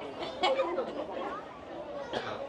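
Crowd chatter: many people talking at once, indistinct, with one nearer voice briefly standing out about half a second in.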